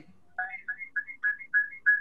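Electronic ringtone: a rapid run of short high chirps alternating between two pitches, about four a second, starting a moment in.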